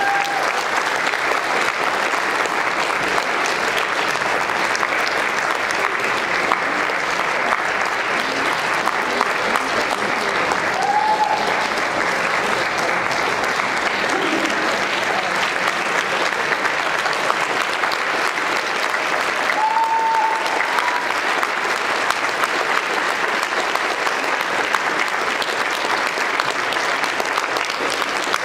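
Audience applauding steadily with dense, sustained clapping.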